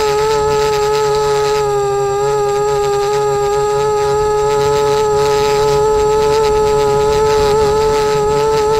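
A drone's electric motors and propellers humming loudly at one steady pitch, heard from a camera on board, the pitch wavering slightly as it manoeuvres.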